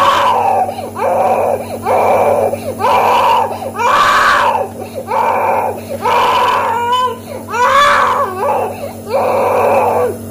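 Infant crying hard in repeated loud wails, about one a second, each rising and falling in pitch. A steady low hum runs underneath.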